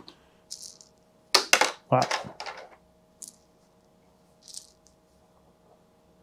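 Small wooden meeple tokens clattering together in a hand: a quick cluster of sharp clicks, then a few faint rustles as they settle.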